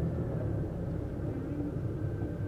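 Steady low engine and road rumble of a moving Nissan, heard from inside the cabin.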